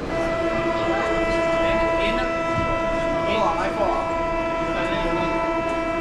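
Paris Métro door-closing warning buzzer: one steady, multi-pitched buzzing tone that sounds for about six seconds and then cuts off, warning that the train's doors are about to close. Platform chatter and station noise lie underneath.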